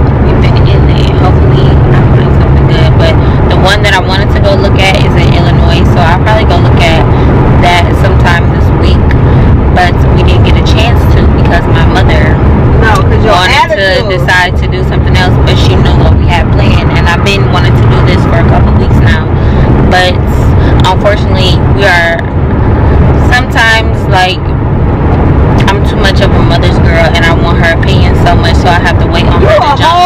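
Steady low rumble of a moving car, heard from inside the cabin, under a woman talking.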